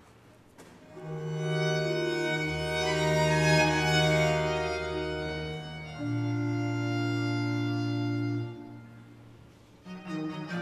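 Early-music ensemble of baroque violin and viols playing slow, held chords. After a brief quiet pause the chords enter about a second in, change near the middle, and fade out near the end just before the next chord begins.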